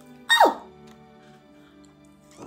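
A woman's short, exaggerated vocal exclamation sliding down in pitch, then faint steady background music.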